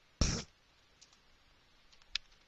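Computer keyboard keystrokes: one loud key click a fraction of a second in, then a couple of faint key taps about a second in.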